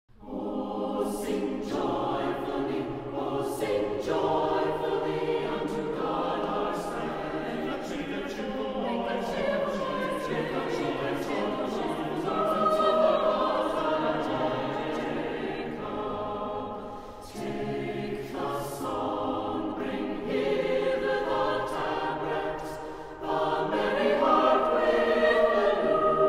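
A choir singing a sacred piece in several parts, in long held phrases with short breaks between them.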